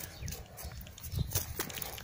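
Footsteps on dry earth: a few soft, irregular steps.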